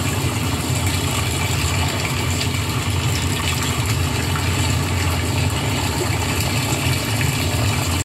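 Pool circulation pump running with a steady low hum, with water rushing and swirling as it is drawn into the skimmer.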